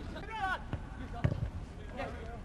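A footballer's shout during a training kick-around, followed by a few dull thuds of the football being kicked.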